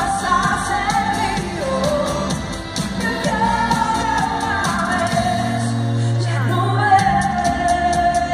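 Live pop music with a woman singing the lead into a microphone over a dance beat. A low bass note is held for about two seconds near the end.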